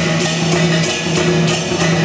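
Chinese percussion accompanying a dragon or lion dance: drum beats with cymbal crashes about two to three times a second, over a steady low ringing tone.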